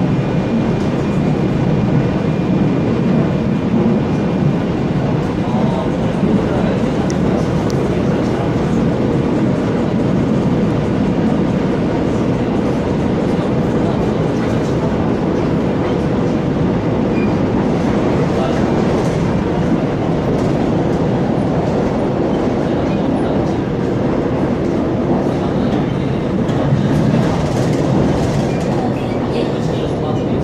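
Seoul Subway Line 1 electric commuter train running: a steady, loud rumble of wheels on rail with a faint steady hum underneath.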